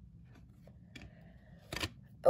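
Trading cards handled in the hand: a few faint ticks, then near the end a brief, louder rustle of card sliding against card as the top card is pulled off the stack.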